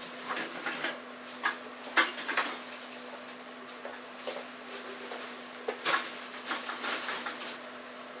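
Empty bottles clinking and knocking together inside plastic shopping bags as the bags are handled and the bottles moved from bag to bag, with plastic rustling. There are scattered sharp clinks, the loudest about two seconds in and just before six seconds.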